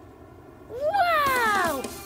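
A child's voice giving one long exclamation of delight, rising briefly in pitch and then sliding down, starting a little under a second in.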